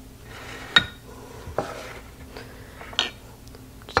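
Glass Pyrex measuring cups being handled on a countertop: three light glass knocks, the sharpest about a second in with a brief ring.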